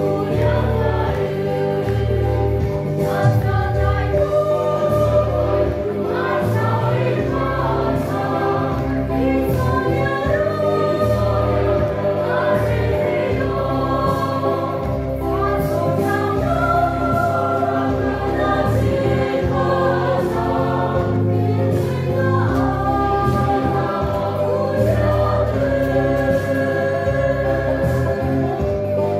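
A mixed choir of men and women singing a song together in harmony, over a low bass accompaniment.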